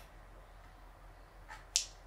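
Quiet room tone, with one brief sharp click near the end.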